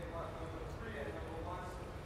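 Faint voices talking in a gymnasium, not close to the microphone, over a steady low rumble of room noise.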